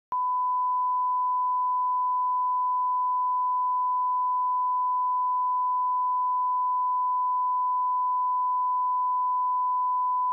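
Television close-down test tone: a single steady, high-pitched sine tone played over colour bars, cutting in suddenly at the start and holding unchanged. It marks the end of the day's broadcast.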